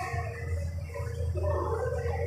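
Dry-erase marker squeaking in short irregular strokes on a whiteboard as words are written, over a steady low room hum.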